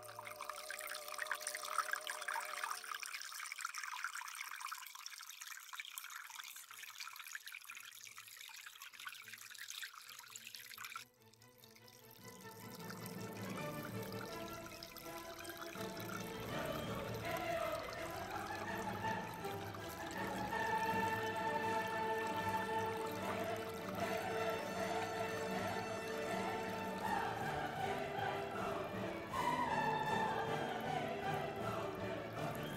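Water trickling and splashing from a small fountain's spout into its basins, stopping suddenly about eleven seconds in. Music with long held notes then comes in and grows louder through the rest.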